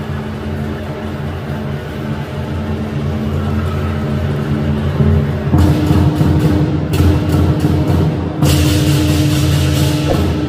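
Lion dance drumming: a large drum beating with clashing cymbals, the whole growing louder. About halfway it steps up with sharp cymbal crashes, and near the end the cymbals clash continuously.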